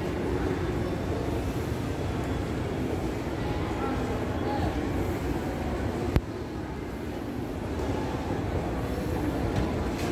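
Indoor mall ambience: the steady rumble of a running escalator under a murmur of voices from a busy food court, with one sharp click about six seconds in.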